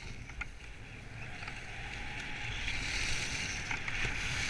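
Skis sliding and scraping over packed, groomed snow. The hiss grows louder as speed builds, with wind rumbling on the microphone.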